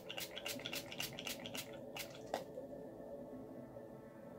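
Rose water facial mist spritzed from a finger-pump spray bottle: about ten short hissing sprays in quick succession over the first two and a half seconds, the last one loudest.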